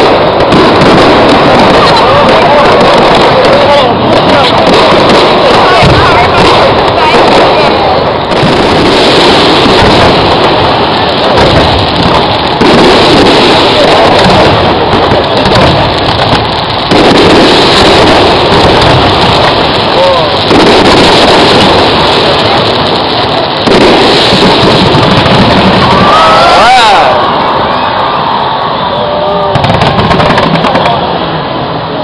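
A fireworks display exploding overhead, loud and dense throughout with several sudden surges in level, mixed with voices from the watching crowd.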